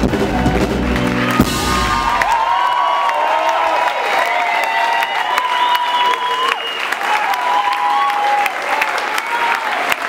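A live rock band ends a song on a final hit about a second and a half in, and the audience then applauds and cheers.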